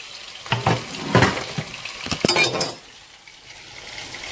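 Meat patties frying in shallow oil in a pan, sizzling, with several sharp clacks of kitchen utensils against pan and board in the first part. The clatter stops about three seconds in and only the quieter sizzle remains.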